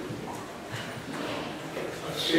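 Faint murmur of voices with scattered light knocks and footsteps as people move and settle.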